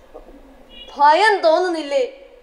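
An actor's voice on stage calling out a short, loud line about a second in, its pitch rising and falling, after a quiet stage hush.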